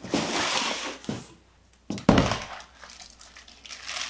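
Cardboard box rustling and scraping as a cylindrical sculpture piece is lifted out of it. There is a knock just after a second in, then a heavier thud about two seconds in as the piece is set down on a wooden floor, followed by softer handling noise.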